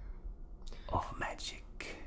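A person whispering a few words.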